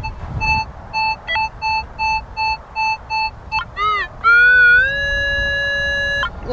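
Metal detector sounding over a buried target: a run of short, even beeps, about three a second, then a few quick warbling chirps and a loud steady tone that steps slightly up in pitch and holds. It is a strong, repeatable signal, which the detectorist reads as a possible big chunk of silver.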